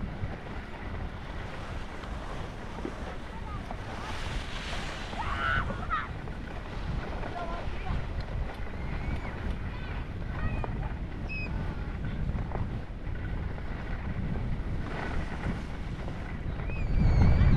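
Wind rushing over the microphone and the steady hiss of skis sliding over snow during a downhill ski run, with faint calls from other skiers now and then.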